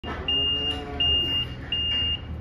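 A livestock truck's reversing alarm sounding regular high-pitched beeps, about three in two seconds, as the truck backs up, with the truck's engine running low underneath.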